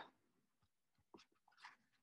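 Near silence: room tone, with a few faint short clicks about a second in and a brief soft rustle near the end.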